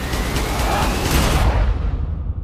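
Trailer sound design: a loud rush of noise over a deep rumble, swelling and then cutting away sharply about a second and a half in.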